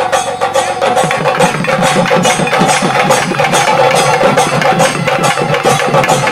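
Festival drumming on double-headed barrel drums, a quick steady beat of about three to four strokes a second, with a sustained tone held above it.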